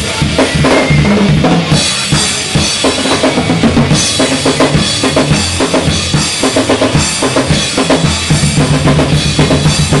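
Rock drum kit played hard and fast, with rapid bass-drum and snare strokes under a constant wash of cymbals, over a recorded rock backing track with steady bass and guitar.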